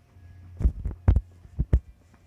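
Handling noise on a handheld phone: about six irregular low dull thumps in the space of a second and a half, over a steady low hum.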